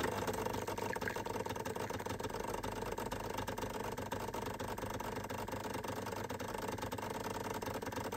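Decent espresso machine pulling a turbo shot: its pump gives a steady, even hum that begins suddenly.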